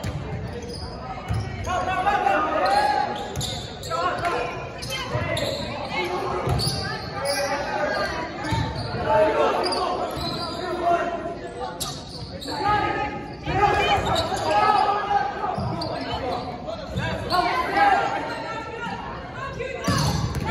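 Indoor volleyball rally: sharp smacks of the ball off players' hands and arms and the floor, amid players' and spectators' voices echoing in a large gymnasium.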